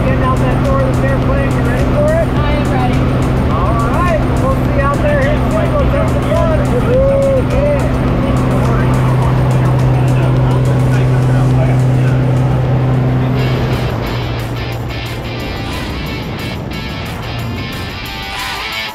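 Steady drone of a small single-engine airplane's engine and propeller heard inside the cabin, with music playing over it. About 14 seconds in, the engine drone drops away and gives way to a rush of wind noise as the airplane slows for the jump and the door is open.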